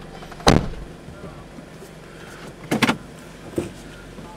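A car's passenger door shutting, heard from inside the cabin as one sharp knock about half a second in; a few softer knocks and clicks follow near the end.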